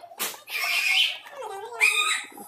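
An animal calling, with a wavering, gliding pitch that lasts over a second.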